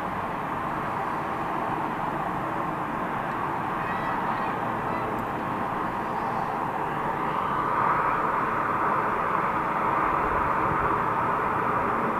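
Steady noise of road traffic passing at speed, growing a little louder about eight seconds in.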